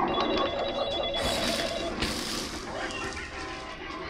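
A telephone ringing with a trilling ring for about the first two seconds, with two short bursts of hiss around the middle.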